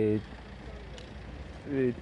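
A man speaking, breaking off briefly after a held vowel and resuming near the end. In the pause there is only a low, steady outdoor rumble.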